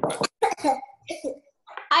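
A person coughing, about three short coughs, followed near the end by a spoken "hi".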